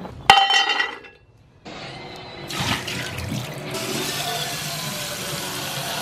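Water running from a kitchen faucet into a ceramic bowl: a steady rushing that starts about two and a half seconds in. Just before it, near the start, there is a brief ringing clatter.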